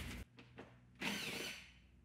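Power drill driving an 8 mm socket. It runs briefly, about a second in, to back out a front body screw.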